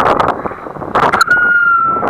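Wind buffeting a microphone as the rider's arm swings and spins through the air, coming in rough gusts. About a second in, a steady high whistle-like tone starts and holds, sinking slightly in pitch.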